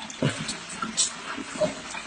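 A dog making short vocal sounds, one falling in pitch near the start, among a few sharp clicks and knocks.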